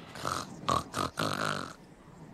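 An animated giraffe character's breathy, wordless vocal sounds: four short puffs of breath-voice, the last one the longest, dying away well before the end.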